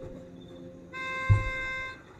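A single held keyboard note, lasting about a second and starting about a second in, over a fainter steady tone, with a short low thump partway through.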